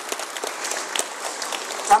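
Audience applauding: many dense, scattered hand claps, steady in level, with a man's voice starting at the very end.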